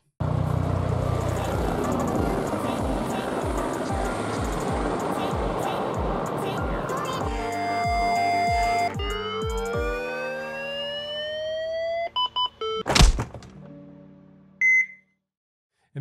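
Intro sound design: a helicopter's rotor thumping steadily over dense engine noise, then musical tones with rising sweeps. One loud hit comes about thirteen seconds in, followed by a single short high beep.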